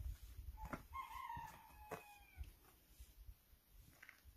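A rooster crowing faintly, one call about a second and a half long that falls slightly in pitch, over a low rumble.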